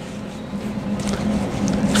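A nitrile-gloved hand rubbing hot sauce over raw beef short ribs: soft, wet smearing and slapping, growing louder toward the end, over a steady low hum.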